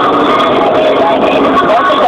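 Loud, steady road and engine noise inside a moving car, with a voice faintly over it.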